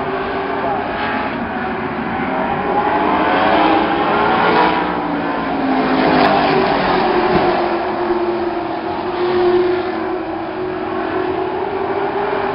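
A pack of short-track stock cars running around the oval, their engines droning together with pitch rising and falling as cars pass, loudest around the middle.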